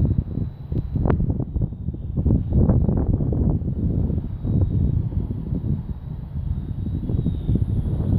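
Wind buffeting the phone's microphone in uneven gusts, a heavy low rumble that covers everything else.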